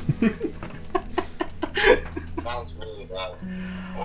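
A man laughing in short repeated bursts, over background music with sustained low notes that change pitch near the end.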